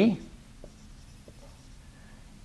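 Faint strokes of a marker drawing on a whiteboard, with two small squeaks about a second apart.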